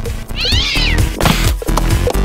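A single short, high-pitched cat meow that rises then falls, over background music with a steady beat. A brief noisy burst follows about a second in.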